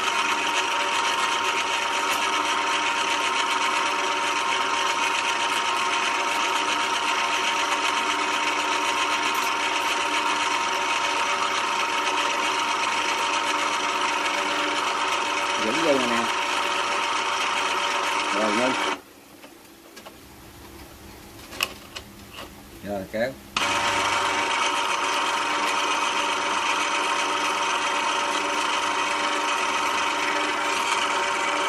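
80 kg electric winch running with a steady whine. About 19 seconds in it cuts out for some four seconds, with a few clicks in the lull, then starts again.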